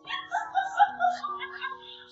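A dog whining in high, wavering cries, excited at greeting its owner, over soft background music with long held notes.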